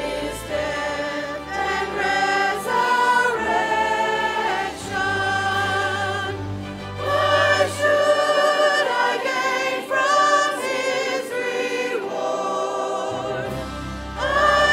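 Church choir singing a gospel song in several parts with instrumental accompaniment, long held notes moving from chord to chord. A low bass line drops out a little past the middle and comes back near the end.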